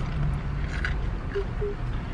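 Steady low rumble of a car's engine and road noise heard inside the cabin, with a faint click a little before the middle.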